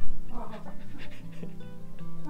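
Background music with a guitar, over a dog panting close to the microphone.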